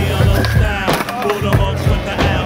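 Hip-hop beat with a steady drum pattern, a snare about every 0.7 s over a repeating bass line.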